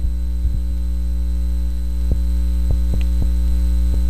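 Loud, steady electrical mains hum in the audio feed, with a few faint clicks scattered through it.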